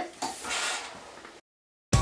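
Steam iron pressing cotton fabric: a soft hissing swish lasting about a second. It cuts off into a short silence, and music starts right at the end.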